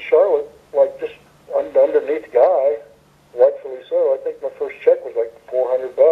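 Speech only: a person talking continuously, with the thin sound of a telephone line.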